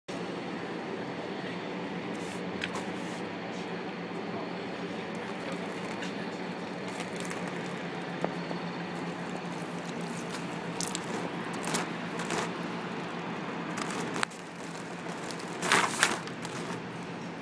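Steady hum of passing street traffic, with light clicks and small splashes as water is poured onto a vinyl banner. The traffic hum drops away about fourteen seconds in, and a hand rubs the wet banner with a short loud swish near the end.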